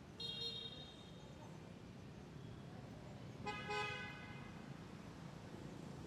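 Two short, steady-pitched horn toots, one just after the start and a louder one about three and a half seconds in, over a faint low background rumble.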